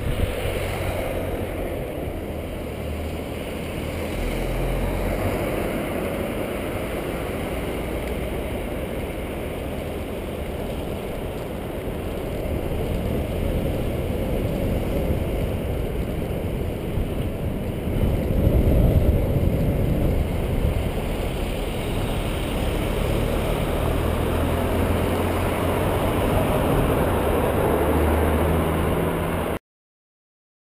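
Vehicle engine running under way, with wind and road noise rushing over the camera's microphone. The low engine note steps up and down, is loudest around two-thirds of the way through, and cuts off suddenly just before the end.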